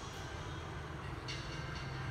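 A steady low background rumble with a brief soft hiss about a second in.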